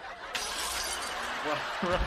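Glass shattering: a sudden crash about a third of a second in that fades out over about a second, followed by a man laughing.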